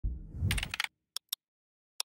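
Keyboard-typing sound effect: a short whoosh overlaid with a quick run of key clicks, then two single clicks a little over a second in.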